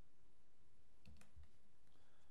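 A few faint clicks at a computer, bunched about a second in with one more near the end, along with a couple of soft low thumps.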